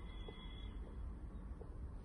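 Quiet room tone: a steady low hum with a few faint soft clicks, and a thin high tone that fades out in the first half-second.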